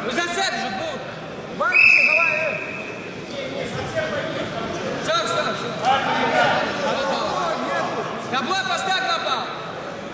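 Men shouting and calling out in a large sports hall, several voices overlapping, with one loud, high, held shout about two seconds in.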